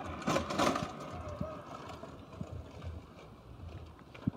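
A billycart's wheels rolling down a concrete driveway and onto the road: a low, rough rumble that fades as the cart moves away.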